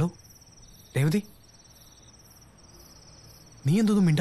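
Crickets chirping in a steady, high, rapidly pulsing trill. Over it, a man's voice calls "Hello?" at the start, about a second in, and twice near the end.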